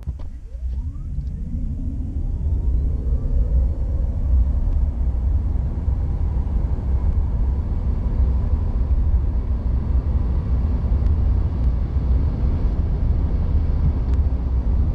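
Interior sound of a 2016 Nissan LEAF electric car accelerating hard from standstill to about 120 km/h. The electric drive motor's whine rises in pitch over the first few seconds, under a loud low rumble of road and wind noise that builds and then holds steady.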